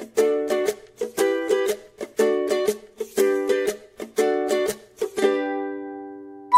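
Background music: a strummed tune with a chord about once a second, the last chord left to ring and fade away near the end.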